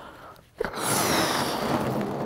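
A person blowing hard into a rubber balloon to inflate it: a steady rush of breath starting about half a second in.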